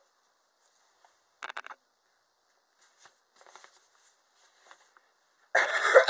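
Brief clicks and soft rustling of a cloth onesie being handled and fastened on a reborn doll, then a loud cough near the end.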